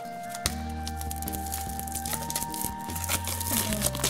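Background music of long held notes that step up in pitch over a steady low bass, with light crinkling of the clear plastic wrap being peeled off a bath fizz ball.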